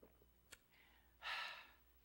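A man's short exhale, a sigh-like breath lasting about half a second, a little over a second in; a single faint click comes just before it, and the rest is near silence.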